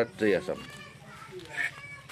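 A man's voice for the first half second, then faint voices in the background.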